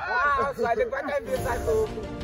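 Excited young voices shouting together, then steady background music coming in about two-thirds of the way through.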